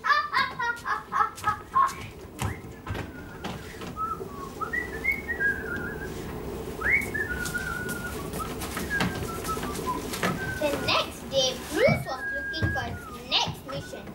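Children's voices in a hall: brief speech at the start and again near the end, with scattered short, high calls and chatter in between over a steady hum of room noise.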